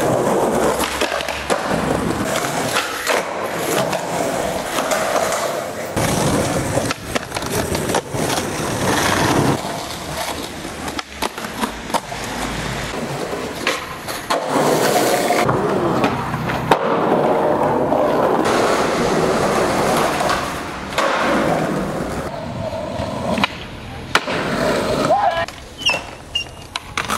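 Skateboard wheels rolling on concrete, with sharp clacks of the board popping, hitting and landing, across several short clips that change abruptly; voices are heard in the background.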